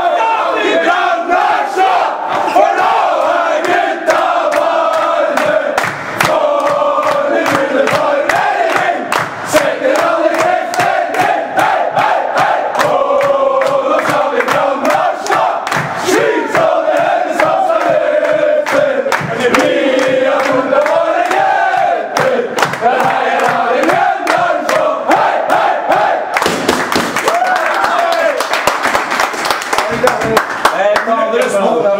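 A group of men singing a loud team chant together, with rhythmic hand clapping keeping the beat; it grows noisier near the end.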